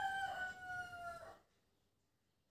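A rooster crowing once: a single long call that holds its pitch and sags slightly toward the end, finishing about a second and a half in.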